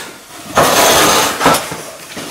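A chair scraping across the floor for about a second as someone sits down at a table, ending in a knock.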